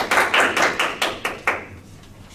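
A small group of people applauding with hand claps, the claps thinning out and stopping about three-quarters of the way through.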